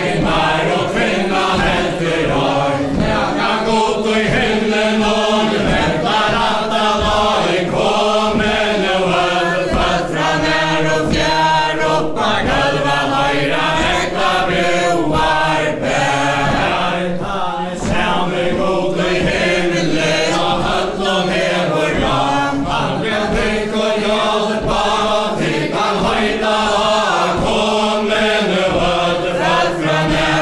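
A mixed group of men's and women's voices singing a Faroese chain-dance ballad unaccompanied, in unison. The dancers' steps on a wooden floor are heard under the singing as many small knocks.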